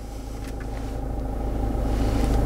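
Land Rover Freelander 2's 2.2 litre four-cylinder diesel idling, heard from inside the cabin as a steady low hum.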